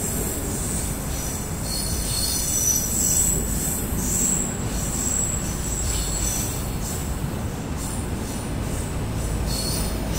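Passenger coaches of a departing train rolling past a platform. A steady rumble of wheels on rails carries high-pitched wheel squeal that comes and goes, strongest in the first few seconds.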